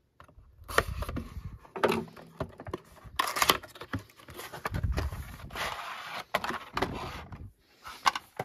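Unboxing by hand: a folding-knife blade slitting the box's seal, then the cardboard box pulled open and a clear plastic blister tray handled inside it. It sounds as a busy run of sharp clicks, scrapes and rustles, loudest about three and a half seconds in.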